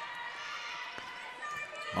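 Faint indoor arena ambience during a volleyball rally: a low crowd murmur and room noise, with one faint knock about a second in.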